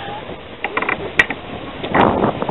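Background noise of an open-air street market, with a quick run of light clicks a little after half a second in and one sharper tick a little after a second.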